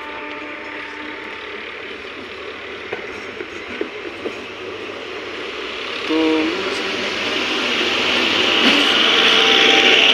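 Indian Railways multiple-unit passenger train approaching and passing close by, its wheels rumbling and clattering on the rails, growing louder as the coaches go past. A brief horn note sounds about six seconds in.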